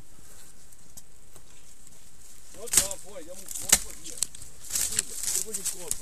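Twigs and leafy branches rustling and cracking close to the microphone as someone pushes through undergrowth. There are two sharp cracks about three and four seconds in, then a run of lighter crackles.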